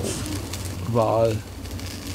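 A man's brief wordless hum, a single 'hmm' that rises and falls, about a second in, over a steady low drone.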